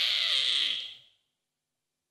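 A man's breathy, high-pitched vocal imitation of an animal call into a microphone, held for about a second and cut off abruptly.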